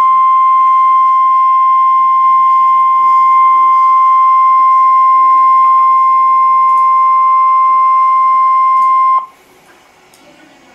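NOAA Weather Radio 1050 Hz warning alarm tone: one loud, steady tone that cuts off about nine seconds in. It is the signal that a warning-level alert, here a tornado warning, is about to be read.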